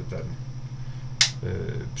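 A single sharp click a little over a second in, a lamp switch being flipped to dim the lighting, over a steady low hum.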